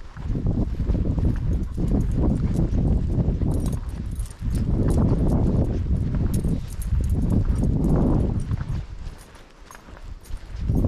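Wind rumbling on the microphone in gusts, easing off shortly before the end, over the steps and crunch of walking on a dry dirt trail.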